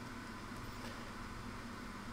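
Steady background hiss with a faint low hum, and no distinct handling sounds: room tone between phrases.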